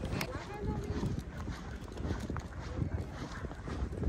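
Footsteps on a paved path with faint voices of other people and light wind on the microphone.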